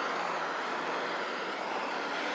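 Steady background road-traffic noise, a continuous rush of passing vehicles with no single event standing out.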